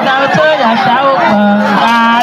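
Many voices singing and calling out together, with a low voice holding long, steady notes.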